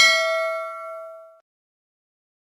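A notification-bell ding sound effect: one bright chime that rings out with several tones and fades away about a second and a half in.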